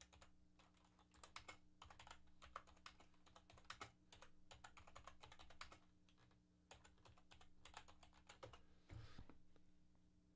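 Faint typing on a computer keyboard: irregular runs of soft key clicks with short pauses, over a faint steady low electrical hum.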